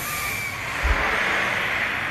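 Drop tower ride dropping its gondola of riders: a broad rushing hiss that swells about half a second in and holds, with a short low thump about a second in.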